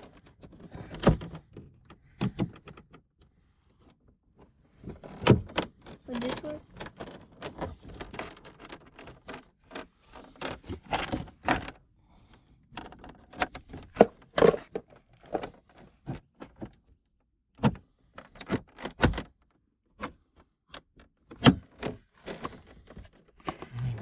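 A small screwdriver and hands prying and tapping at the plastic front door trim panel of a Porsche Panamera 4S: a string of irregular sharp clicks and knocks with short quiet gaps between them.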